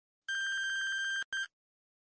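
Electronic time's-up signal from a quiz countdown timer: one steady, high beep lasting about a second, then a short beep at the same pitch, marking that the answering time has run out.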